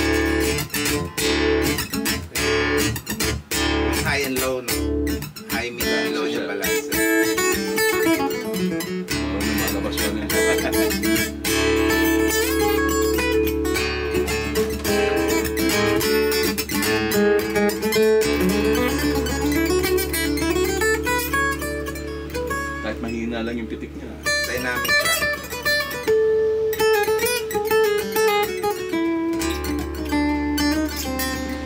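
An Elegee Adarna steel-string acoustic guitar (solid Sitka spruce top, rosewood back and sides, phosphor bronze strings) played unplugged. It opens with choppy, percussive strumming for the first several seconds, then moves to ringing picked notes.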